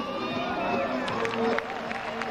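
Instrumental floor-exercise music with a wavering melody line over arena crowd murmur, with a run of short sharp taps in the second half.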